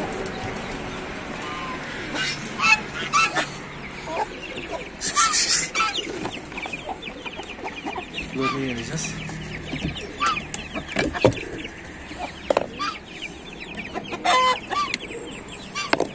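A mixed flock of chickens clucking, with young chicks peeping rapidly throughout and several louder hen calls.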